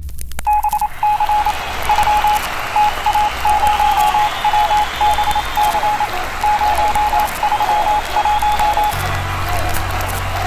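A high electronic beep keyed on and off in short, irregular groups, like Morse code, over a steady hiss. A deep bass note comes in about nine seconds in.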